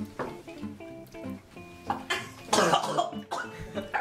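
A person coughing in a run of harsh coughs starting about two seconds in, set off by swallowing a shot of hot sauce, over background guitar music.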